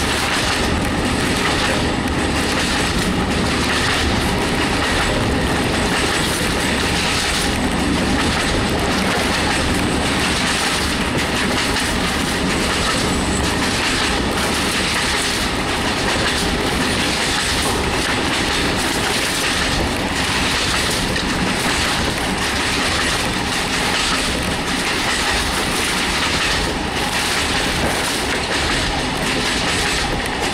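Regional diesel railcar running at speed, heard from on board: a steady rumble of the moving train with the regular clickety-clack of wheels over rail joints.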